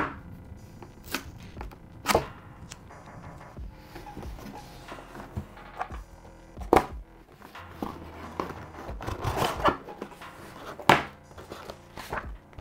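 A cardboard box being opened by hand on a table: a few sharp knocks of the box and its flaps against the tabletop, spaced a few seconds apart, between scraping and a stretch of cardboard and paper rustling near the end as the lid opens and a sheet is pulled out.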